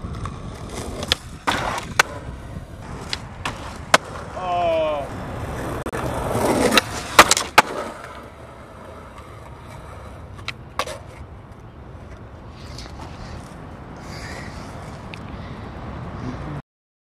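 Skateboard wheels rolling over rough asphalt, with sharp clacks of the board popping and landing. About six seconds in a louder scrape builds as the board slides on the rail, ending in two hard board slaps.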